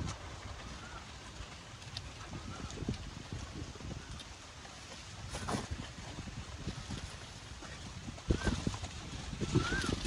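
Faint rustling and snapping of water spinach stems as they are cut and gathered by hand, over a low rumble, with sharper snaps about five and a half and eight seconds in.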